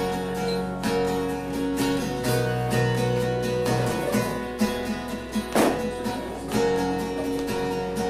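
Acoustic guitar strummed steadily through changing chords with no singing: an instrumental break between verses of a song.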